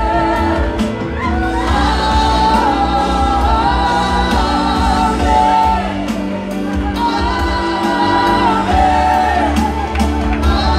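Gospel worship music with singing: voices holding long notes over a band with heavy bass and drum hits.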